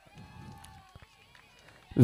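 Faint, distant voices of people calling out, with one drawn-out call in the first second.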